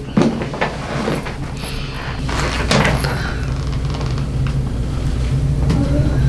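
Hands working on a seated patient's shoulders and neck, with rustling of clothing and scattered soft clicks and knocks, over a steady low hum.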